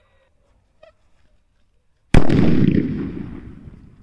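Medium-size sutli bomb (twine-wrapped firecracker) exploding: one sudden loud bang about two seconds in, followed by a rumbling echo that fades over the next two seconds.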